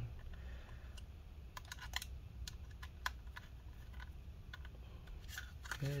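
Small screws being tightened into a metal drive bracket on a 2.5-inch SSD with a precision screwdriver: scattered light clicks and ticks of the driver and screws, over a faint steady low hum.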